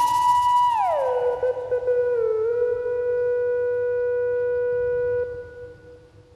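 A single held synthesizer note rings on alone after the beat stops. About a second in it slides down about an octave, wavers briefly, holds steady, then fades out near the end.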